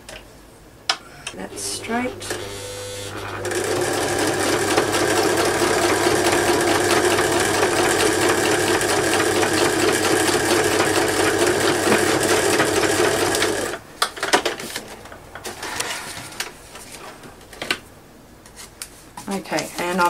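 Electric sewing machine stitching paper pages into an envelope journal signature. The motor hums for about two seconds, then a steady run of stitching lasts about ten seconds and stops suddenly, followed by a few light handling clicks.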